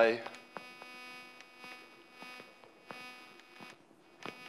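Chalk on a blackboard while a formula is written: faint, irregular taps and short scrapes as each stroke lands, over a steady electrical hum.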